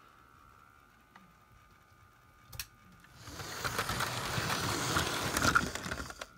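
Model Flying Scotsman locomotive setting off along the track about three seconds in: its small electric motor and wheels on the rails make a steady mechanical running sound that grows louder. A single click comes just before it starts.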